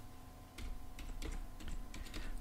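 Computer keyboard being typed on: a run of light key clicks, closer together in the second half.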